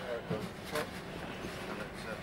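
Faint, indistinct voices over a steady background, with a couple of short knocks as band gear is handled into the back of a van.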